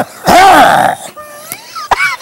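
Two men laughing hard: a loud, drawn-out howl of laughter in the first half, then quieter, wavering, wheezy laughter.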